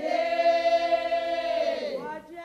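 A choir of voices holding a sustained chord that slides downward near the end, as a soundtrack.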